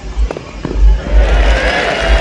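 A few sharp tennis racket-on-ball hits, then, about a second in, a grass-court tennis crowd starts applauding as the point is won.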